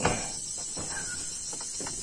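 Insects chirring steadily in a high, even drone, with a brief faint note about a second in.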